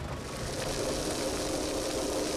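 A brush fire burning through pine and scrub: a steady rushing hiss, with a faint steady engine hum underneath from about half a second in.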